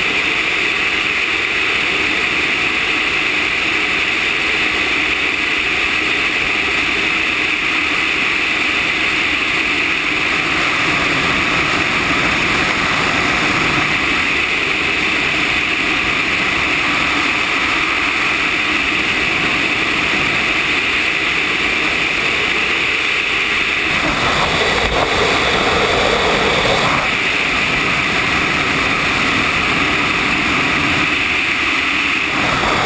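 Steady rush of airflow over an RC scale ASH 25 sailplane and its onboard camera while on aerotow. About six seconds before the end, a lower, louder rushing swells for about three seconds.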